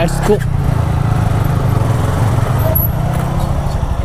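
Single-cylinder motorcycle engine running at low revs, a steady pulsing rumble, as the bike rolls slowly up to a stop.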